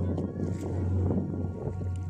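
Kayak paddle strokes and choppy water splashing against the hull, with wind rumbling on the microphone. Background music plays underneath.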